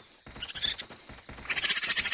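Cartoon raccoons' vocal sound effects: a raspy chatter that gets louder in the last half second.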